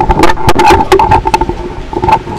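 Rapid, irregular camera shutter clicks from a press pack over a steady, loud hum.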